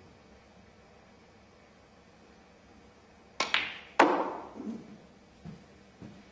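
Snooker shot: the cue tip clicks against the cue ball and, a split second later, the cue ball clicks into the blue. About half a second after that comes the loudest knock, with a short rattling decay, as the blue drops into a pocket, then a few softer knocks as the cue ball comes off the cushions.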